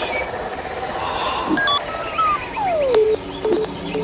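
Animated forest soundtrack of birds chirping in short calls, with a falling whistle-like tone in the second half that settles on a held note.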